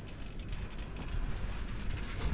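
Steady rumble and hiss of a chairlift in motion, its cable and sheave wheels running, with wind noise.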